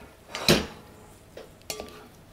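A spoon knocking against a cooking pot while a stiff ball of flour dough is stirred. There is one sharp knock about half a second in and a softer clatter near the end.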